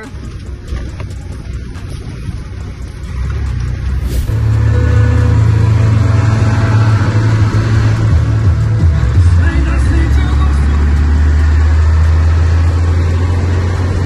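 Ford truck cab while driving: a lighter rumble, then a sharp click about four seconds in, after which a loud, steady low engine and road drone runs at cruising speed.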